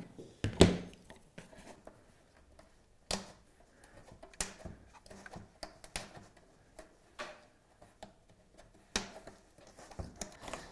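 Faint, scattered small clicks and crackles, a second or so apart, from a plastic tucking tool pushing fabric under a lampshade ring, the ring and its tape lifting away from the PVC-backed shade as the fabric goes under.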